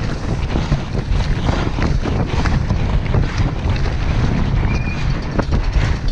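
Wind noise on an action camera's microphone at speed on a downhill mountain bike, over the tyres on dirt and frequent knocks and rattles from the bike over bumps. A brief high squeak about five seconds in.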